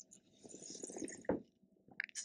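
Faint wet mouth sounds and breathing of a taster working a sip of red wine around his mouth, with one short throat sound a little over a second in.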